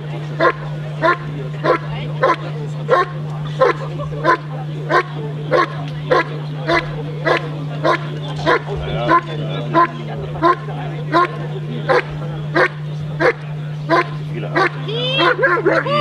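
German Shepherd Dog barking steadily at a protection helper hidden in a blind, single sharp barks about one and a half a second in an even rhythm: the hold-and-bark of a protection trial. Near the end the even run of barks breaks into a jumble of other sounds.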